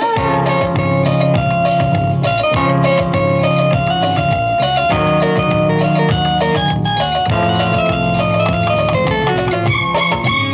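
Instrumental interlude of a 1980s Bollywood film song: an electric guitar plays a run of quick stepped notes over bass and drums, with no singing.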